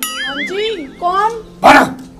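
Comic sound effect: a whistle-like tone warbling rapidly up and down for about a second, followed by short voice-like calls and a loud brief call near the end.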